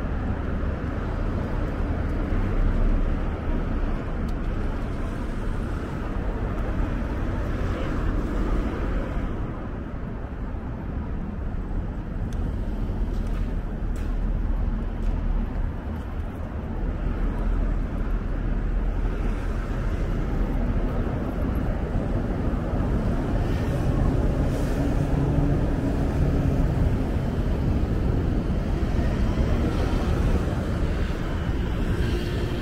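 City street traffic: a steady low rumble of cars and other vehicles passing on the road, slightly louder in the second half.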